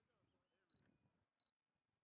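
Near silence: faint outdoor ambience, with two brief faint high beeps about a second apart.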